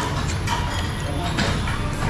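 Busy restaurant ambience: background chatter from other diners over a steady low hum, with a few short clinks of spoons and chopsticks against bowls. Near the start, rice noodles are slurped from a bowl of phở.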